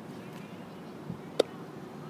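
Low steady background hiss, then a single sharp click about one and a half seconds in: the pop of the weather-band radio's speaker switching on as the alert activates it.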